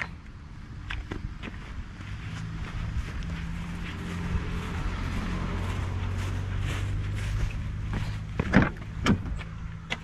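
A steady low engine hum from a motor vehicle builds over a few seconds and then eases off. Near the end come two sharp knocks as the pickup truck's door is opened and its cab is reached into.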